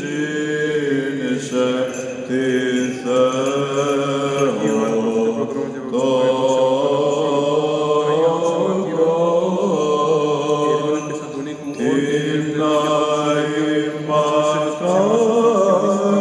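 Byzantine chant of the Greek Orthodox Divine Liturgy: voices sing a slow melody in long held notes over a steady low drone, the hymn to the Theotokos that follows the priest's commemoration of her after the consecration.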